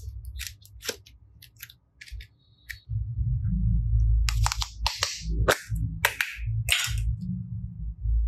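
Soft modelling clay worked by hand and pressed into a plastic ice-cream-bar mould: scattered sharp sticky clicks and crackles, sparse at first and coming thick and fast in the second half, over a low rumble of hand-handling noise.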